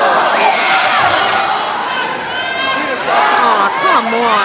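Basketball game sounds in a gymnasium: a ball bouncing on the hardwood court amid players' movement, with crowd voices throughout.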